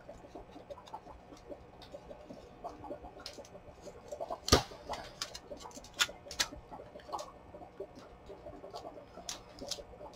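Quiet handling of paper and an ink blending tool as the edge of a paper library pocket is inked. Scattered light taps and rustles, with one sharper click about four and a half seconds in.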